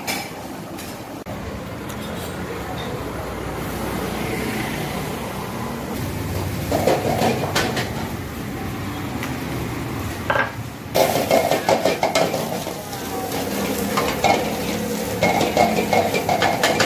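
Metal cooking utensils clattering and scraping against a pan, with sizzling. A steady kitchen noise comes first, then a short burst of clatter, and from about two-thirds of the way through, fast, dense clanging.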